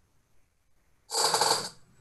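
A short audible breath into a headset microphone, starting about a second in and lasting under a second.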